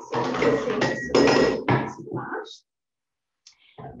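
A glass blender jar and a stainless steel pot being handled and set down on a countertop, clinking and knocking with a brief metallic ring. The sound cuts off suddenly about two and a half seconds in.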